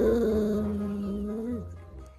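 A small dog giving one long vocal call, a drawn-out whining howl held at a steady pitch for about a second and a half before it drops off.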